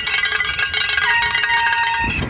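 A bell, like a cowbell, rung rapidly and without pause, giving several steady ringing tones. A lower ringing tone joins about halfway through. It is protest noisemaking.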